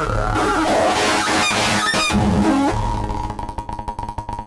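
Eurorack modular synthesizer playing a chaotic, self-feeding feedback patch as its knobs are turned by hand. Pitches glide and swoop up and down, then break into a rapid stuttering pulse near the end.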